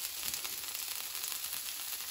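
Chum salmon fillets frying skin-side down in hot oil in a cast iron skillet: a steady sizzle with fine crackling.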